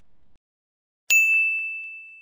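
A single bright ding of a notification-bell sound effect, struck about a second in and ringing on as one steady high tone that slowly fades. It is the chime of a subscribe animation's bell icon being switched on.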